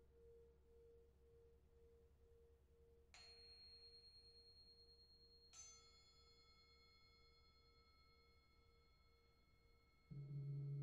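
Faint, lingering metal tone, as from a struck singing bowl, pulsing about twice a second as it fades. Two light strikes on small hanging bells come about three and five and a half seconds in, each ringing on high and clear, the second with several tones at once.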